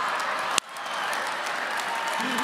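Audience applauding, with one sharp click about half a second in.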